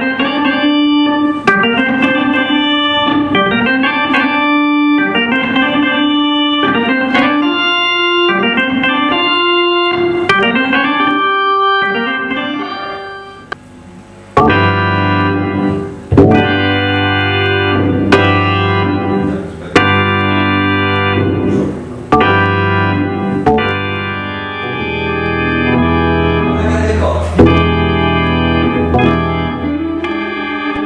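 Hammond-style organ playing: a repeating phrase of short sliding notes, then after a brief break about halfway, full held chords over a bass line.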